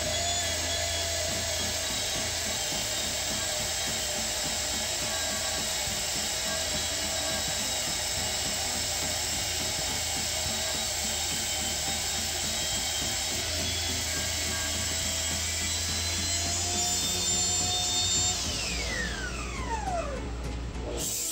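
Table saw running while a drill spins a glued-up oak-and-maple blank against the blade, a steady machine whine with cutting noise as the vase profile is shaped. Near the end the whine falls steadily in pitch as the machine winds down.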